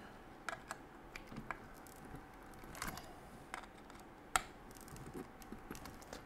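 Hex wrench turning engine-mount screws through a metal RC car chassis plate into the nitro engine's mount: scattered small clicks and ticks of the tool in the screw heads, with one sharper click about two-thirds of the way through.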